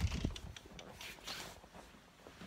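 Handling noise from a handheld camera being carried along while walking: a few knocks at the start, then a short rustle of clothing against the microphone about a second in.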